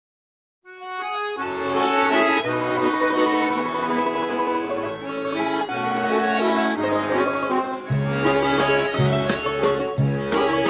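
Instrumental intro of a karaoke backing track for a Russian waltz, led by accordion. It starts just under a second in, and deeper bass notes come in on the beat near the end.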